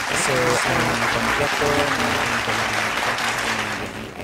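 Loud steady static hiss with a low electrical hum over a man's voice, coming through a remote guest's microphone feed: a fault that the host takes for a grounded microphone.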